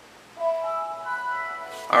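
The Windows 7 startup chime plays through the Asus G74SX laptop's speakers: a few bell-like notes enter one after another about half a second in and are held together as a chord. It marks the logon finishing and the desktop loading.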